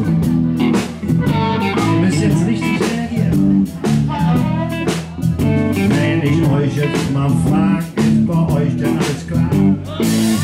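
Live blues band playing an instrumental passage: electric guitar lines over a steady drum-kit beat.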